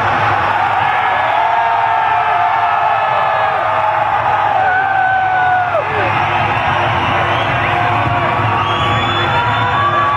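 Concert crowd cheering and screaming, many voices holding long high shouts that overlap, over a low steady drone.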